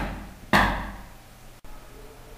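Loud knocks on a door, one right at the start and another about half a second in, each dying away quickly.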